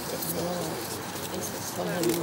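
People talking in conversation, voices overlapping; no other sound stands out.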